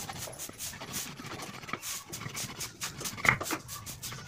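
A long metal blade scraping and shaving the pointed end of a wooden stick in repeated strokes, with one louder, sharper squeak about three seconds in.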